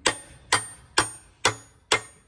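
Hammer striking a steel drift held against a ball bearing in a ZF transmission case: five sharp metallic strikes, about two a second, each ringing briefly.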